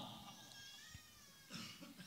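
Near silence: room tone, with a faint, short wavering pitched sound in the first second.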